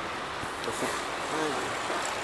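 Steady outdoor street noise with the hiss of road traffic, and a faint voice murmuring briefly twice.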